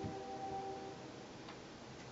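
Distant train horn: a faint, steady chord of several tones that fades out about a second in, followed by a single light click.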